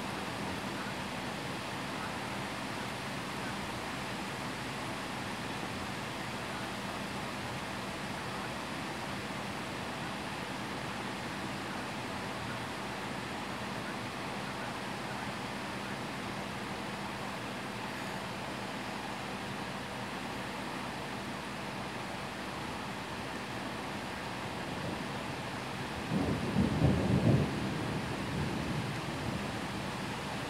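Steady hiss of heavy rain, and about 26 seconds in a rumble of thunder that swells for a couple of seconds and then dies back into the rain.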